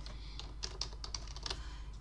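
Computer keyboard typing: a short run of light keystrokes, a single short word being typed, starting about half a second in.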